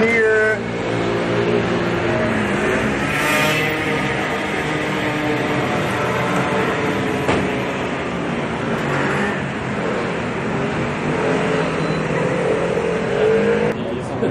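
Street traffic: a car engine running close by, its pitch rising about three seconds in and again near the end, with voices mixed in.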